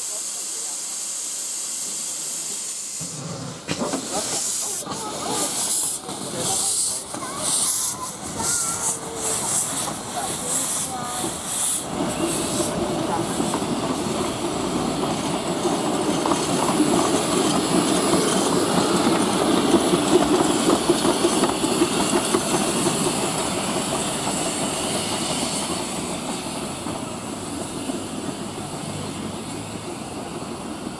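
A narrow-gauge steam locomotive hisses steadily for the first few seconds. Then a steam locomotive pulls away, its exhaust beats quickening, and its train runs past with a steady rumble of wheels on rail that swells and then fades.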